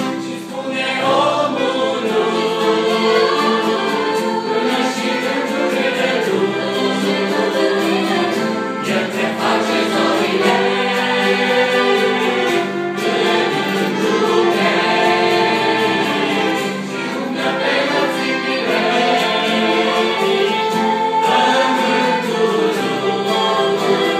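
A mixed choir of young women and men singing a hymn in Romanian, in sustained, continuous chords.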